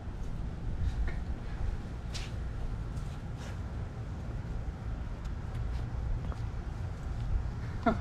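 Steady low rumble of outdoor background noise, with a couple of faint taps about two and three and a half seconds in.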